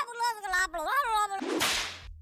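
A man's voice sounding in a high, gliding pitch, then, about three-quarters of the way in, a short swish sound effect that marks an edit transition.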